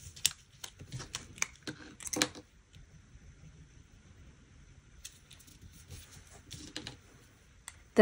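Light paper handling: soft rustles and small clicks and taps as fingers press a sticker down onto a planner page, busiest in the first couple of seconds, then sparse.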